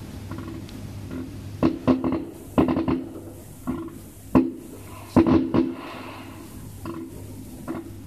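Fireworks shells bursting in a string of sharp bangs at irregular intervals, some in quick pairs, each trailing off in a short rumble.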